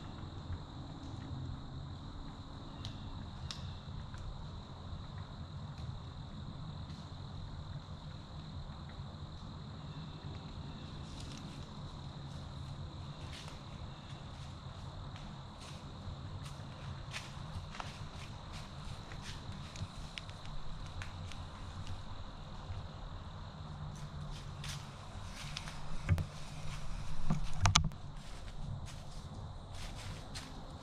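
Scattered crunching footsteps in dry leaf litter. They come more often as time goes on, with a louder burst of rustling near the end, over a steady, high insect trill.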